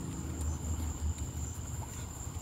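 Crickets trilling steadily in a high, thin tone over a low rumble.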